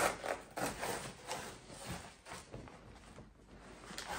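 Grocery packaging rustling and crinkling as it is handled, a run of short rustles that thins out and grows quieter after about two seconds.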